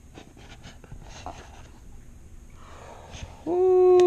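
Soft rustling and small clicks as a cardboard magnetic cube box is handled and its lid lifted off. Near the end a man gives a drawn-out vocal 'ooh' held at one steady pitch, the loudest sound.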